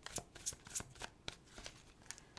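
Tarot cards being shuffled by hand and a card pulled from the deck: a run of faint, irregular card clicks and slides.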